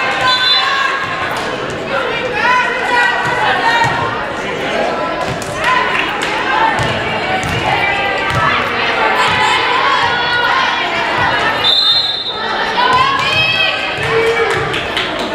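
Volleyball players and spectators calling out and chattering in a large gym, with knocks of a ball bouncing on the hardwood floor. A brief, high referee's whistle sounds near the end.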